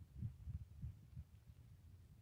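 Wind buffeting the microphone: faint, uneven low rumbles that come and go several times a second.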